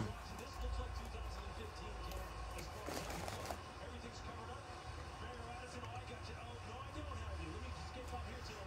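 Faint chewing of a bite of hot dog in a soft bun, with a brief rustle about three seconds in, over a low steady hum.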